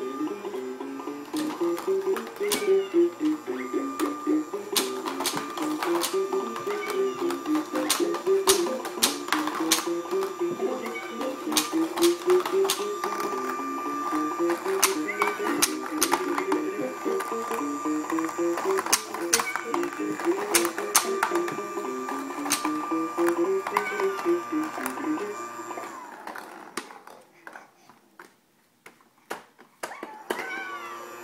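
Electronic ball-ramp toy tower playing its tune while plastic balls click and rattle down its spiral plastic ramps. The tune stops about four seconds before the end, leaving only a few scattered clicks.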